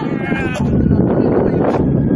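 People's voices, one a wavering high-pitched call, over a loud, noisy background.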